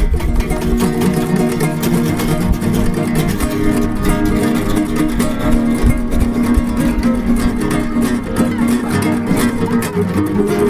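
Improvised guitar music, plucked strings playing continuously at an even level.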